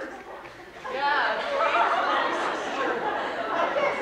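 Many voices talking at once in a dense, continuous chatter that swells up about a second in.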